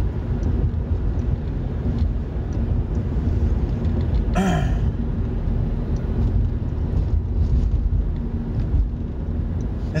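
Car road noise heard inside the cabin: a steady low rumble and rattling from driving over rough pavement. About four and a half seconds in, a short falling-pitch vocal sound from the driver.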